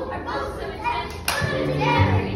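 Hand clapping with voices, in a break in the music; about a second and a half in, after a sharp knock, the backing music with its bass line comes back in.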